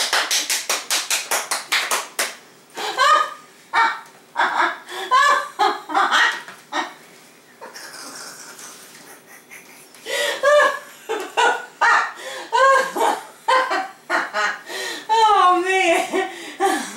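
Hands clapping rapidly, a quick run of sharp claps over the first two seconds, then stopping. Bursts of laughter follow.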